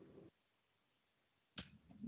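Near silence: the video-call audio drops out completely for over a second, then a short sharp click sounds near the end.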